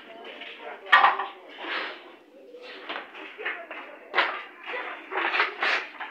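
Indistinct voices talking, with a sharp knock about a second in and another just after four seconds.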